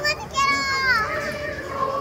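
A child's high-pitched call, held for about half a second and falling in pitch at the end, over the chatter of a crowd.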